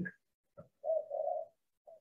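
A dove cooing in the background: two short, low coos about a second in.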